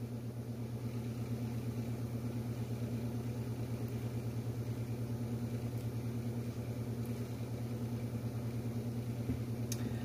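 A motor running steadily with a low hum and a fast, even pulsing.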